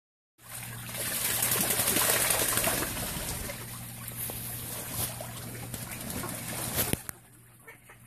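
Ducks bathing in a shallow pond: busy, crackling water splashing and dribbling, loudest in the first few seconds and dropping away sharply shortly before the end. A faint steady low hum runs underneath.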